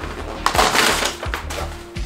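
Paper poster crumpled into a ball by hand: a dense crinkling rustle lasting about a second, over background music.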